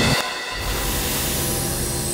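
A train passing close by: a steady rumble and hissing rush, with a thin high tone sliding slowly down in the second half.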